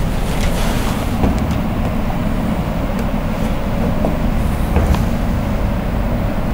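Steady low rumbling background noise with a few faint short clicks scattered through it.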